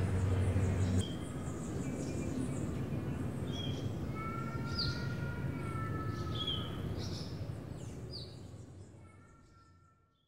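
Birds calling over a steady outdoor background rumble: short chirps that drop in pitch recur every second or two, with a few longer held whistles in between. It all fades out over the last couple of seconds.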